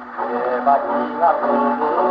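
A 1934 Victor 78 rpm record of a Japanese film song playing on an acoustic gramophone: after a brief lull, a male solo singer comes in over orchestral accompaniment with a steady held note beneath.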